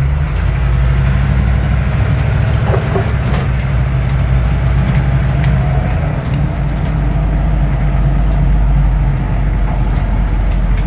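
AM General Humvee's diesel V8 engine running as the vehicle drives, a steady low drone heard from inside the cab.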